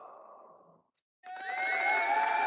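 A short, faint breathy sigh into a call microphone that fades out within a second. About a second later a louder, drawn-out sound with several held, wavering pitches starts.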